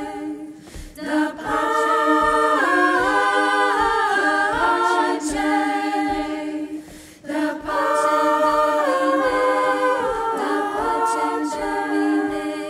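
Women's choir singing a cappella in harmony: the upper voices move in stepwise phrases over a steady held low note. The singing breaks off briefly twice, about a second in and about seven seconds in.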